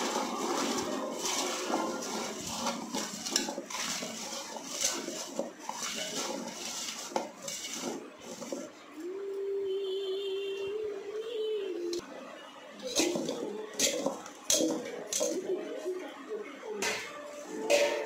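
A bare hand tossing and mixing raw mango pieces with spice paste in an aluminium pot: pieces shuffling and knocking against the metal, with several sharp clinks in the second half. A steady held tone lasts about three seconds in the middle.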